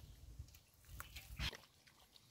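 Faint splashes and squelches of hands digging in shallow muddy water along a ditch bank, a few short sloshes about a second in and just before the middle.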